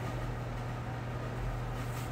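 Steady machine hum: a constant low tone with an even hiss behind it, unchanging throughout.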